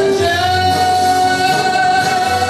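A singing voice holds one long, high sustained note over a backing track of accompanying music.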